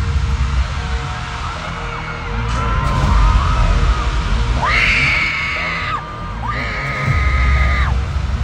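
Loud K-pop concert music with heavy bass through arena speakers, with the audience screaming. Two long, high, shrill held tones stand out, one about five seconds in and one near the end.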